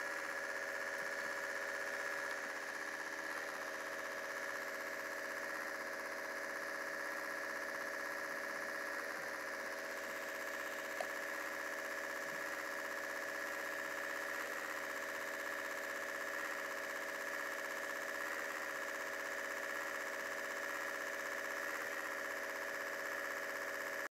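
MacBook's cooling fan and hard drive running steadily while it boots, a constant hum with several fixed whining tones. One faint click about eleven seconds in.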